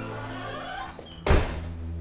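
A door shutting with a single heavy thunk about a second and a half in, over steady background music.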